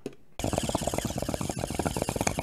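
Rapid, dense clicking that starts abruptly about half a second in and keeps going, the soundtrack of an inserted advertisement.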